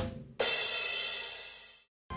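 A drum-kit sting over a title card: a hit at the start, then a cymbal crash about half a second in that rings out and fades to silence near the end.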